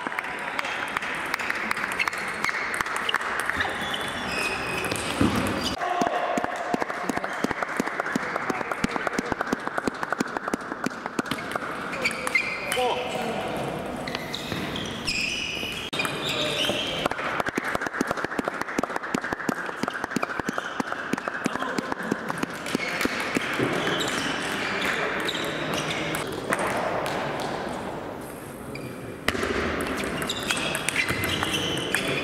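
Table tennis balls being struck with bats and bouncing on tables, a near-constant run of quick clicks from rallies at this and neighbouring tables, with background voices.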